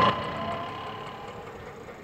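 Auto-rickshaw engine idling faintly under a low, even street background, growing gradually quieter.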